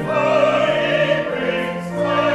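Church choir and congregation singing a hymn with organ accompaniment, held notes moving from one to the next about every half second.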